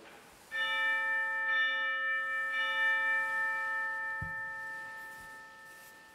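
Altar bell rung three times, about a second apart, each ring fading slowly: the consecration bell marking the elevation of the host at Mass. A short soft thump about four seconds in.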